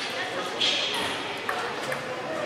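Table tennis hall ambience: the sharp clicks of celluloid table tennis balls striking tables and bats, over a murmur of background voices. A short, loud noisy burst comes about half a second in.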